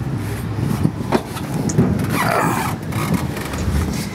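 Scrapes, knocks and rustling as a person climbs into a sand car's seat, over a steady low rumble.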